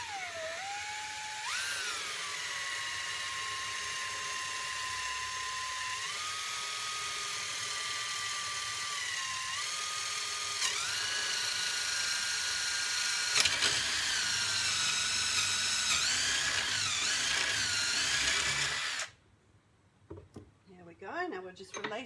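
Cordless drill running steadily as it bores a hole through a small piece of dry, weathered timber held in a vice. Its whine steps up and down in pitch several times as the load changes, then stops about 19 seconds in.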